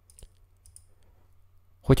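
A few faint, sharp computer-mouse clicks in near quiet, then a man's voice starts near the end.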